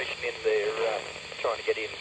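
Speech received over a satellite radio link, heard through a handheld transceiver's speaker in short stretches over a steady hiss.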